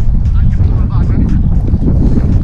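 Storm-force wind buffeting the microphone: a loud, gusty rumble of wind noise.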